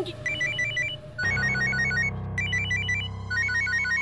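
Mobile phone ringtone: a quick melody of short electronic beeps repeating over and over. A low sustained background score comes in under it about a second in.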